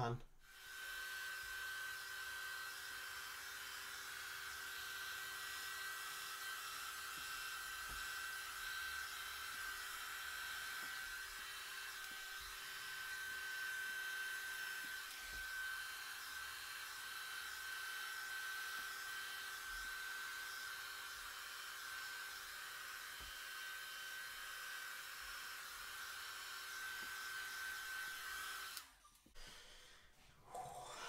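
Remington D3010 hair dryer running steadily on its cool setting, a rush of air with a steady high whine, blowing wet acrylic paint across a canvas. It switches on about half a second in and cuts off about a second before the end.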